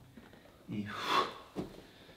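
A man's short, forceful breath out as he hops his feet forward to his hands from downward dog.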